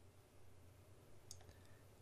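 Near silence: faint room tone with a single faint computer-mouse click a little over a second in.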